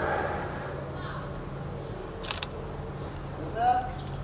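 A camera's shutter clicking once a little past halfway as a photo is taken, over a low steady background hum.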